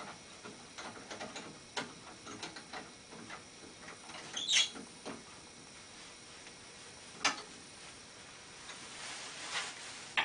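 Light clicks and scrapes of a small square wooden blank being seated in a metal lathe chuck and the chuck being tightened by hand. There is a brief louder scrape about four and a half seconds in and a sharp click a little after seven seconds.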